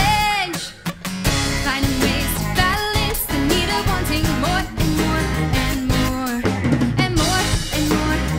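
A live rock band plays an instrumental passage: drum kit with kick and snare, electric and acoustic guitars, and bass. The band drops out briefly about a second in, then plays on at full level.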